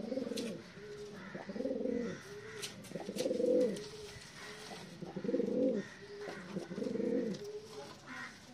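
Guldar pigeon giving the repeated throaty courtship coo of a domestic pigeon, with five rolling coo phrases about every one and a half to two seconds, each ending in a short steady note.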